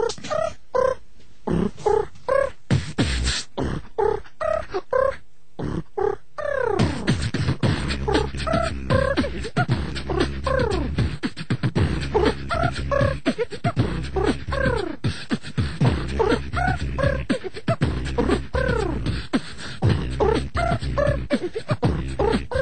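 Live beatbox freestyle by a group of beatboxers on the studio microphone. It opens with sharp drum-like mouth sounds and short pitched vocal notes. About six and a half seconds in, a deep steady bass line joins beneath the beat, with sliding vocal sounds over it.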